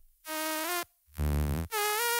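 A sung vocal phrase resynthesized by the Fusion spectral plugin into a synthetic, saw-like tone, with the Split control set to keep only the even harmonics. Three notes follow one another, the last held longer.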